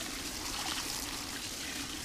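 Water from the recirculating classifier's hose running steadily onto gravel in a plastic classifier screen, washing the material through into the bucket below.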